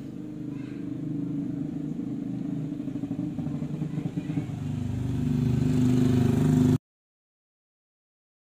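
A motor vehicle engine running steadily, growing louder over the last couple of seconds, then cut off abruptly by an edit about seven seconds in.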